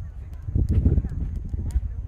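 Footsteps along a coir-matted footpath, soft thuds over a low rumble, with indistinct voices of other people talking.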